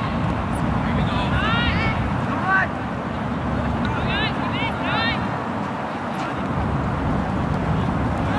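Short, high-pitched shouts and calls from players and spectators on the field, coming at irregular moments, over a steady low rumble.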